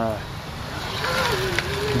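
Tracked robot platform driving: a thin drive-motor whine that wavers slightly in pitch, over track running noise that grows louder.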